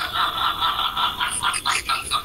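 A person laughing in a run of short pulses.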